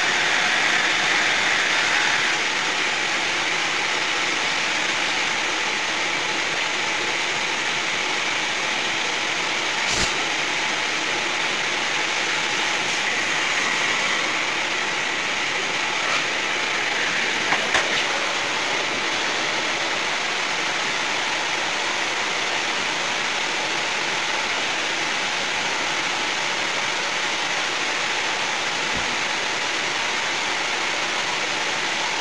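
Vacuum cleaner running with a steady whooshing noise, with a few brief light knocks.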